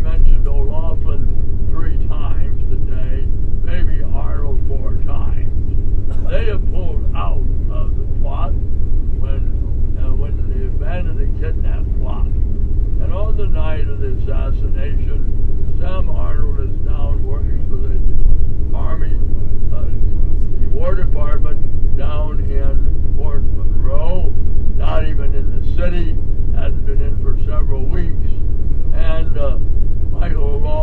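Indistinct speech over a loud, steady low rumble of a moving vehicle.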